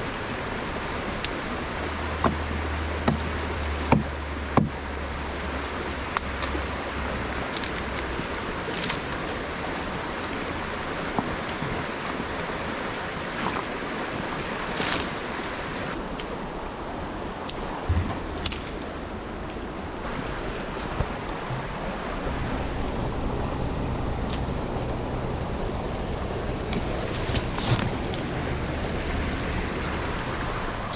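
Steady rushing of a shallow creek flowing over stones, with scattered sharp snaps and cracks of small dead twigs being broken off for firewood.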